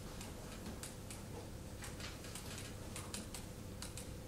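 Scattered faint, sharp clicks at irregular intervals over a low, steady room hum while agreement papers are being signed.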